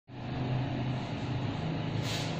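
A steady low mechanical hum, like a running engine or motor, over even background noise.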